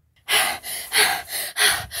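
A person gasping and panting, about four quick, heavy breaths starting about a third of a second in.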